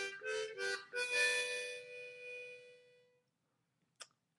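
Diatonic harmonica in C played one note at a time: three short notes, then a longer held note that fades away.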